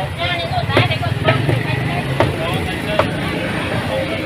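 Street-stall background noise: a steady low hum with voices in the background and a few sharp clacks scattered through it.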